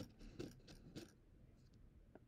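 A few faint clicks and scrapes in the first second, then near silence: a digital caliper being slid open and set against a PVC tube.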